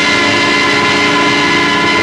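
A loud, steady horn-like chord of several held notes from the film's soundtrack, unchanging throughout.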